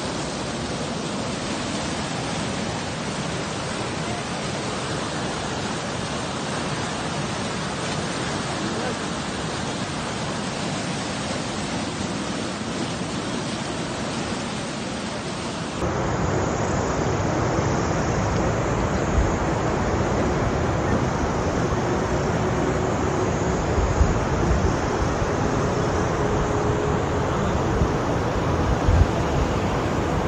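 White-water river rapids running with a steady roar. About halfway through it cuts abruptly to a louder, steady rushing noise with a faint steady tone and a couple of low thumps.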